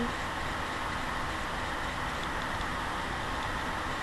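Steady, even hiss of background noise from a webcam microphone, with no distinct events.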